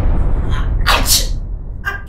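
A woman sneezing once, loudly and sharply about a second in, set off by face powder being brushed on. A loud low rumble runs underneath.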